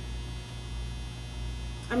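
Steady low electrical mains hum, with a faint higher buzz on top; a woman's voice starts right at the end.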